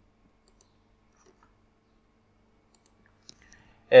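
A few faint, short clicks of a computer mouse in an otherwise quiet room, two close together about half a second in and a few more near the end; a man's voice begins right at the end.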